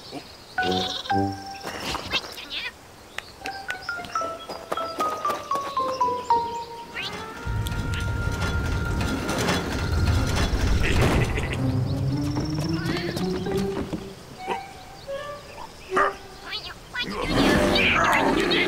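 Cartoon soundtrack: background music and comic sound effects with wordless character vocalizations. A stepped falling tone runs from about four to seven seconds in, a low rumble runs through the middle, and it grows louder and busier near the end.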